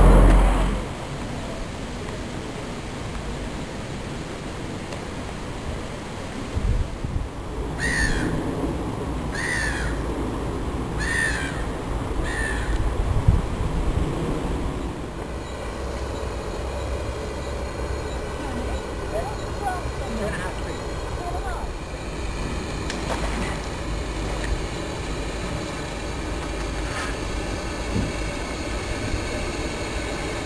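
A bird calling four times, about a second and a half apart, over steady outdoor background noise.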